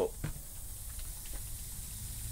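Faint steady hiss of water spraying from a pipe fitting that burst in a freeze.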